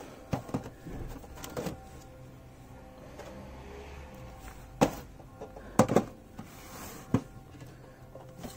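Sharp knocks and clacks of a boxed diecast model being handled against a shop shelf, a few light taps near the start and the loudest double knock about six seconds in, over faint background music.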